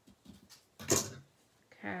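Scissors cutting a paper strip: a few faint clicks, then one sharp clack about a second in.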